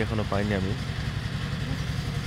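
Steady low drone of an engine running at idle, under a man's voice speaking one word at the start.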